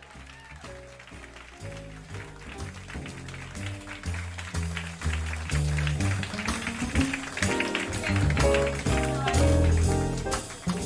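Live small-group soul-jazz: a double bass playing low stepped notes under piano chords, with light drum and cymbal strokes keeping time, growing steadily louder as the band comes in.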